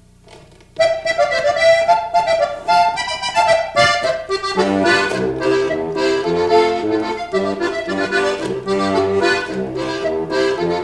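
Diatonic button accordion (Steirische-style button box) starting a Tex-Mex polka about a second in, the melody alone at first. At about four and a half seconds the bass buttons join in a drawn-out bass pattern that imitates the rhythm instruments of Tejano music.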